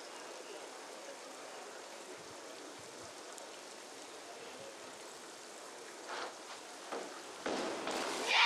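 Steady faint hiss of an outdoor diving-pool venue, with two short sharp sounds about six and seven seconds in and a shout of "yeah!" near the end as the diver goes into the water.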